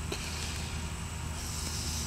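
Steady outdoor background noise: a low rumble with a faint hiss.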